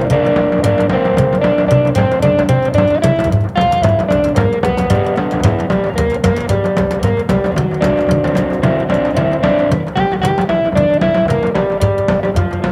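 Instrumental passage of a blues song with no singing: a melodic lead line of held notes over a low bass part and a steady, driving beat.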